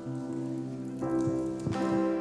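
Instrumental passage of a worship song: grand piano chords ringing on with acoustic guitar, a new chord coming in about halfway through.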